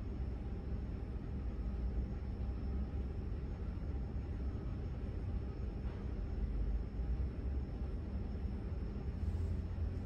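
Steady low background rumble with a faint high-pitched whine running through it, with no distinct event.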